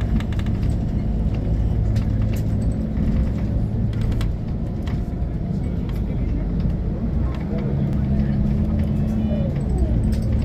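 Cabin sound of a moving bus: a steady low engine drone and road rumble, with scattered light rattles and clicks.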